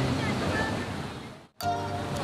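Steady rush of a jungle stream or falls, fading out to a brief dropout about one and a half seconds in, after which background music with held notes comes in.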